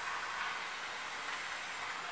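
Bed bug steamer hissing steadily as steam comes out through a triangular multi-jet nozzle wrapped in a microfiber towel, with the steam turned down to a lower-force, hotter setting.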